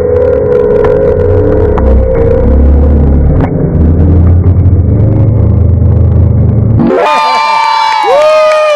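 Muffled, loud gymnasium sound of a volleyball match: crowd voices and court noise with a few sharp knocks. About seven seconds in it cuts abruptly to a clear music sting with held and gliding tones.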